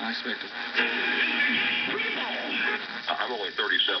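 Restored 1937 Emerson AL149 tube radio's speaker playing AM broadcasts while the dial is turned across the band: snatches of speech and music shift from moment to moment as stations come and go.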